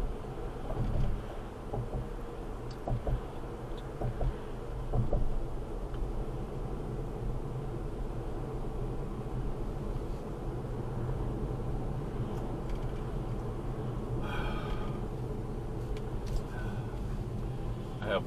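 Steady road and tyre noise inside the cabin of a moving Tesla, an electric car, heard as a low, even rumble with no engine note. A few light clicks come in the first few seconds.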